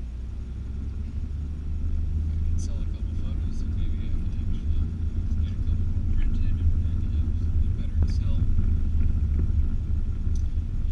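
Car engine and road rumble heard from inside the cabin as the car pulls away and drives, a steady low rumble that grows a little louder after about two seconds.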